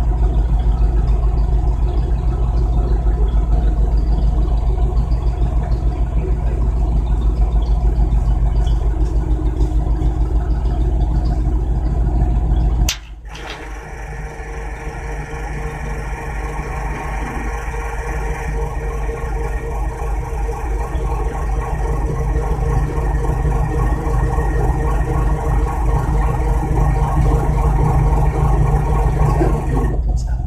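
A vehicle engine idling close by, a steady low rumble. About 13 seconds in there is a sharp click, the sound suddenly drops and changes, then grows gradually louder again.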